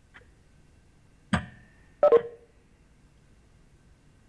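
Two short electronic alert tones from a video-conferencing app, about a second apart, the second lower-pitched than the first.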